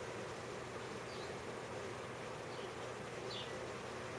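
Steady whirring drone of desktop computer cooling fans running, with a few faint, short high chirps over it.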